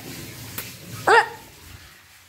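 A dog barks once, a single short, sharp bark just over a second in. A brief click comes a moment before it.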